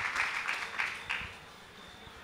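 Audience applause, dying away about a second and a half in.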